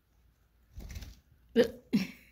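A low rustle or bump, then two short, sharp voiced sounds from a person about halfway through.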